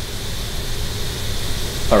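Steady room noise: an even hiss over a low rumble, with a faint steady high tone. A man's voice starts right at the end.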